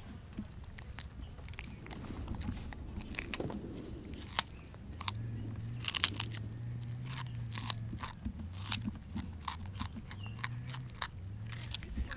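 Vervet monkeys eating fruit: irregular wet crunching, smacking and crackling of chewing at close range. A faint low hum comes in about halfway through.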